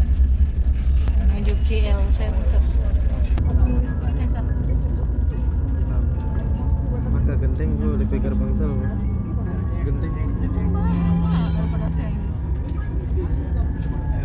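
Steady low rumble of a coach's engine and tyres heard from inside the cabin as it drives along the highway, with voices in the background.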